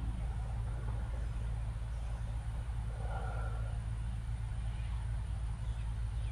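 Steady low rumble of outdoor background noise, with a faint, brief mid-pitched sound about three seconds in.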